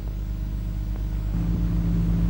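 A steady low hum with no speech, its pitch unchanging throughout.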